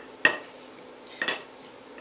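A muddler knocking in a glass while lemon slices, a basil leaf and sugar are muddled: two sharp knocks about a second apart.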